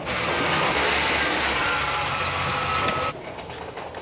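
A car driving by: a steady rush of engine and tyre noise with a faint whine in it, cut off suddenly about three seconds in.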